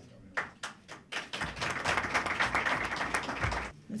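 Applause from a small roomful of people: a few scattered claps, then dense clapping for about two and a half seconds that stops abruptly.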